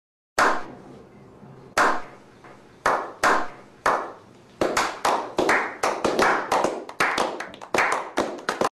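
A slow clap: single hand claps about a second apart, each trailing off, then speeding up from about four and a half seconds in into quicker clapping by several people.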